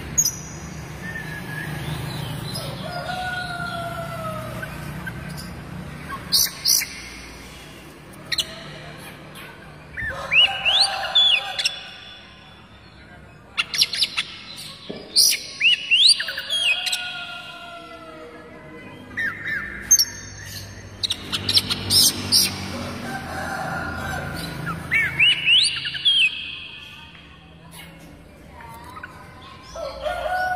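Oriental magpie-robin singing: soft whistles at first, then loud phrases of rapid rising whistled sweeps and chatter that come back every four to six seconds.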